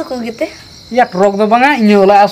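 A man and a woman talking, with their voices strongest in the second half, and crickets chirping in the background.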